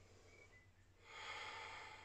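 A single soft breath about a second in, lasting about a second, from a woman doing bodyweight lunges; otherwise near silence.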